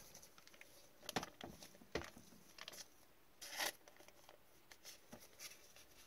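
Faint handling noise of a trading card and clear plastic card holder in gloved hands: a few brief rubs and light scrapes, the loudest a short scrape about three and a half seconds in.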